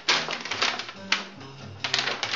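Clattering and rustling as a large sheet of paper or card is picked up and handled, in several sharp strokes, over jazz music with a walking low line.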